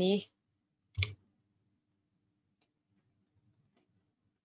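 Computer mouse clicking: one sharp click about a second in, then a few faint clicks near the end.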